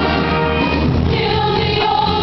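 High school show choir of mixed voices singing together in harmony, the chord changing near the end.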